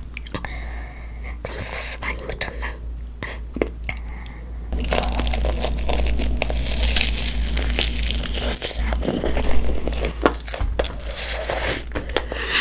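Close-miked eating of a breaded mozzarella corn dog dipped in tteokbokki sauce: soft wet clicks as it is dipped, then from about five seconds in a louder run of crunching bites and chewing.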